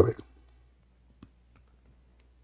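A man's voice finishing a word, then a pause with a single faint click about a second later.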